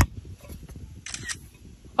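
A sharp click, then about a second in a phone's camera-shutter screenshot sound, a brief double snap: the sign of a screenshot being taken by accident.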